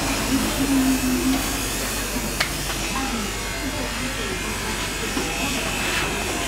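Indistinct voices talking over a steady buzzing hiss with a low hum, with one sharp click a little before halfway.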